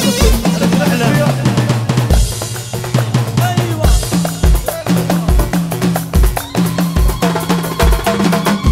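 Chaabi rai music with a sampled drum kit from a virtual drum app playing a beat: deep bass-drum hits, snare strokes and rimshots with cymbals. Under the drums run a bass line and a bending melody line.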